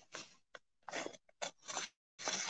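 A sheet of scrap-paper mulch being cut, a handful of short crisp snips and crinkles of paper.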